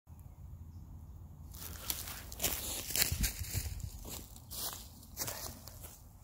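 Footsteps through leafy ground cover and leaf litter on a woodland floor: a series of steps starting about a second and a half in, as someone walks up and crouches down.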